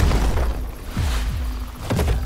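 Explosions on a Civil War battlefield, deep booms heard over dramatic film-trailer music. There are heavy hits at the start, about a second in and near the end.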